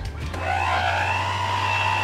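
Oster electric hand mixer starting up about half a second in, its motor whine rising briefly and then holding steady as the beaters churn thick churro dough.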